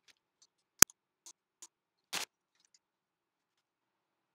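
Small terracotta flower pots being handled on a table: one sharp clack a little under a second in, two light ticks after it, and a short scrape about two seconds in.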